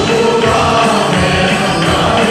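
Many voices singing a gospel worship song together over a steady beat, with hand clapping.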